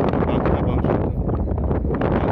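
Wind blowing across the phone's microphone: a steady, loud, low rumble.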